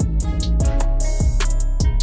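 Background music with a steady drum beat and guitar.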